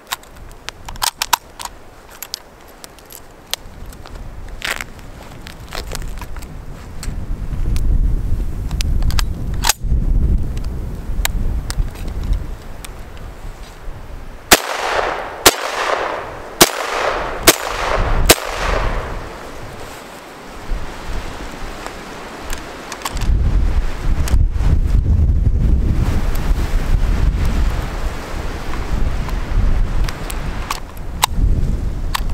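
SKS semi-automatic rifle (7.62×39 mm) fired five times, about a second apart, each shot sharp and loud with an echo trailing off. Before the shots come small metallic clicks of the rifle being handled and readied.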